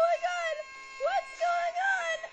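A very high-pitched cartoon character's voice making several short rising-and-falling exclamations, with no clear words.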